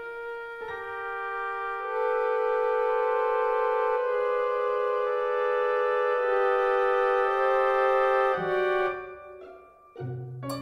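Orchestral music: slow, sustained chords held and shifting every second or two, swelling about two seconds in, then breaking off and dying away to a brief lull near the end.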